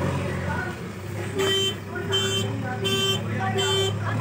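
JCB 3DX backhoe loader reversing: its reverse alarm beeps about every 0.7 s from about a second and a half in, over the steady drone of the diesel engine.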